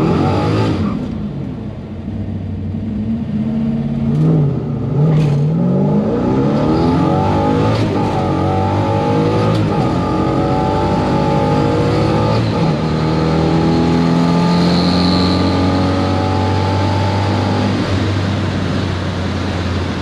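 All-aluminum 427 ZL-1 V8 running, heard from inside the car's cabin. There is a quick blip of revs about four seconds in, then the engine note climbs slowly under load over several seconds, holds steady, and falls away near the end.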